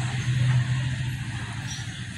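A steady low hum of a running motor, with faint background noise.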